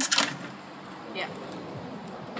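A brief spoken 'yeah' over a steady, even background hiss.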